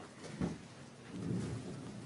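Movement noise from people settling: a soft thump about half a second in, then a low, rustling rumble.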